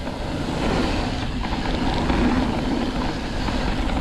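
Mountain bike riding fast down a dirt trail: wind rushing over the action camera's microphone, mixed with the tyres rolling over the dirt. The noise is steady and dense, heavy in the lows, with no breaks.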